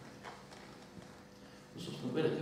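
Quiet classroom: a faint steady hum with a few soft knocks, then a voice starting near the end.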